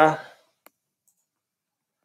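A single computer mouse click, just after a man's voice trails off.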